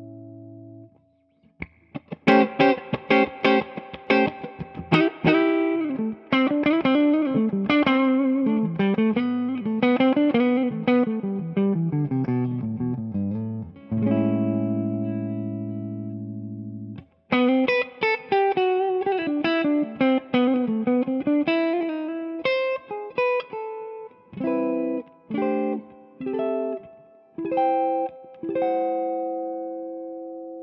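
Josh Williams Mockingbird semi-hollow electric guitar on its bridge pickup, played through a Bloomfield Drive amp with a little grit: quick single-note lead runs, a held chord about halfway through, more runs, then short chopped chord stabs with gaps between them, ending on a ringing chord.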